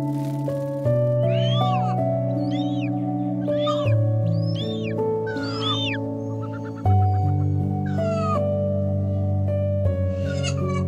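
Calm background music with slow, sustained chords. Over it, an eagle at its nest gives a series of high calls that arch up and fall, about one a second.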